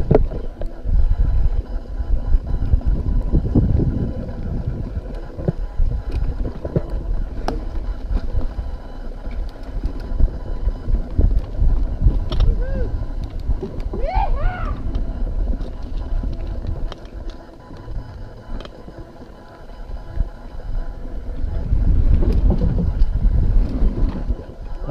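Mountain bike ridden fast over dirt singletrack and wooden bridge boards, heard through an on-bike camera's microphone: a continuous rumble of tyres and wind on the mic, with frequent clicks and rattles from the bike over bumps. It eases off for a few seconds past the middle, then builds again.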